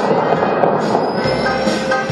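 Loud, steady rush of Bellagio fountain water jets spraying and splashing down onto the lake, with the show's music playing over loudspeakers underneath it.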